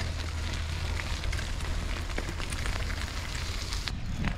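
Steady wind and ride rumble on a moving bicycle's action camera, with scattered light ticks, and the sound briefly cuts out near the end.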